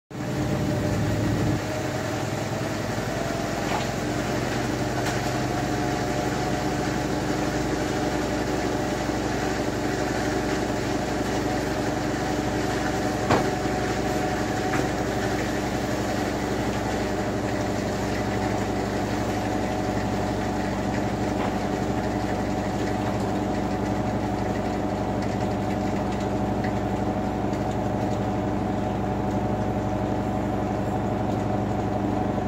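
Washing machine drum spinning, its motor running with a steady hum that rises slightly in pitch over the first few seconds as the spin speeds up. A single knock about 13 seconds in.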